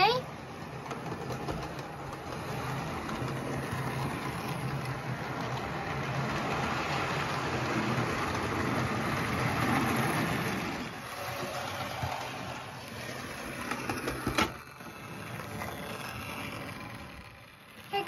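Model railway locomotive's small electric motor whirring and its wheels and coaches running and rattling on the track. It grows louder as the train passes close about ten seconds in, then quieter, with a single click near the end.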